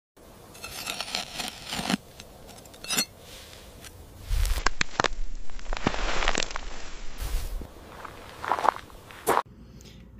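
Crunching, rustling and scraping of loose soil worked by hands and a metal wrench, with sharp clicks scattered through it. A low rumble sits under the middle stretch.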